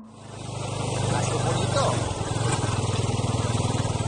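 Motorcycle engine running steadily at low revs with a fast, even pulse, under a steady rush of wind on the camera microphone. The sound fades in over the first second.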